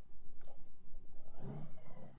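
Honda Gold Wing flat-six motorcycle engine running at low speed through a turn, heard as a low uneven rumble from the rider's helmet; about a second and a half in, a louder steady pitched drone comes in as the bike pulls away.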